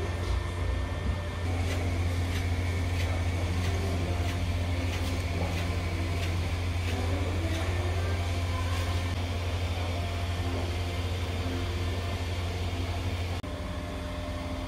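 A steady low mechanical hum that stops abruptly near the end, with faint light ticks over it for the first several seconds.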